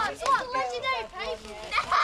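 A group of children's voices talking over one another in high-pitched chatter.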